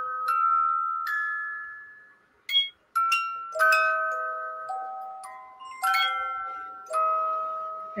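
Music-box movement in a vintage rotating cake stand playing a tune: single bell-like notes, each struck sharply and fading slowly, one after another at an unhurried pace.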